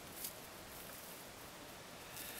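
Steady low hiss with one brief rustle about a quarter of a second in, as a strand of three-strand rope is worked under another by hand.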